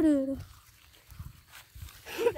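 A drawn-out voice ends within the first half second. Then come faint, irregular soft thuds and rustles of a garden hose swung as a skipping rope and slapping the grass, with light landing steps.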